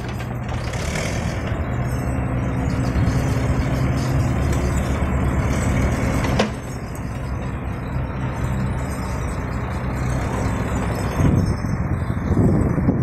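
Komatsu PC35MR-2 mini excavator's diesel engine running steadily under hydraulic load as the machine swings and works its boom and bucket, with a sharp knock about six seconds in.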